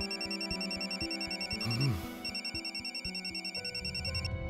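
Mobile phone ringing with a fast, repeating electronic warble, breaking off briefly about halfway through, over soft background music.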